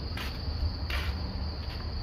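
Insects trilling in one steady, high-pitched, unbroken note, over a low rumble.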